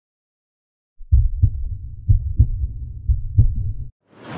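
Heartbeat-like logo sound effect: a deep low rumble with three double thumps, about one pair a second. It starts after a second of silence and stops just before the end.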